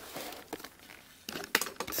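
Paper pages of a large book rustling and crackling as it is held and shifted by hand, with a cluster of sharper crackles in the second half.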